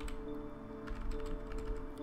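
Computer keyboard typing: scattered short runs of keystrokes over soft background music with steady held tones.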